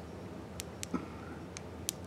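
A few faint, scattered ticks and crinkles from a foil trading-card booster pack wrapper shifting in the fingers, over quiet room tone.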